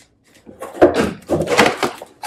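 Plastic-wrapped wooden toy bunk-bed headboards being handled and set down: a run of knocks and rustling that starts about a second in.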